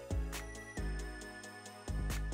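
Background music with a steady beat: deep bass notes, sustained synth tones and regular percussion hits.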